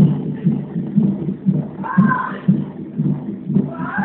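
Fetal heart monitor's Doppler sound: the unborn baby's heartbeat as a regular whooshing beat, about two beats a second. A faint voice is heard briefly about two seconds in.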